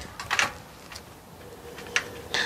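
A stemmed beer glass lifted off a tabletop with a brief scrape about half a second in, then a faint click near the end as it is raised to drink.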